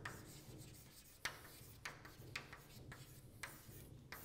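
Chalk writing on a blackboard: faint scratching strokes with several sharp taps of the chalk against the board, the loudest a little over a second in.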